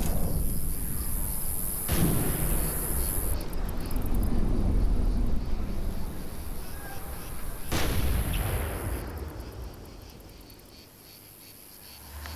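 Two distant gunshots with long rolling echoes, about two seconds in and again near eight seconds, over a low rumble, with insects chirping at times. The sound dies away toward the end.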